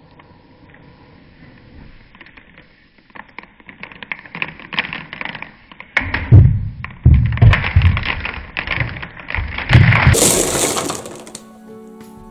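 A tall tower of stacked plastic Copic marker pens collapsing. Scattered small clicks build up, then about halfway through a heavy clatter of markers falling and hitting each other and the floor runs on for several seconds. Music plays underneath.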